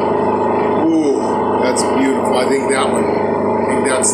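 A steady low drone of several held tones, with a voice speaking indistinctly over it.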